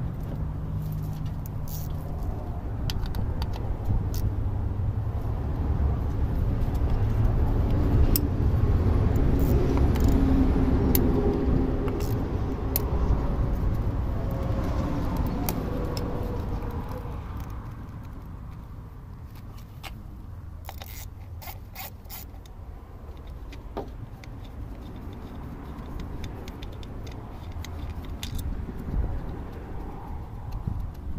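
Ratchet and metal hand tools clicking and clinking on a car engine, with a quick run of sharp clicks about twenty seconds in. Under them a low rumble swells to a peak about ten seconds in and fades away by about seventeen seconds.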